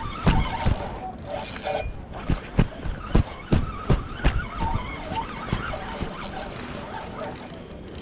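Handling noise on a camera held against a fishing rod and reel: irregular sharp knocks and rubbing, about two or three a second, over wind rumble on the microphone, thinning out near the end.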